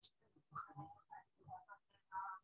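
Faint, indistinct speech: a few short phrases from a person out of view, in an otherwise quiet room.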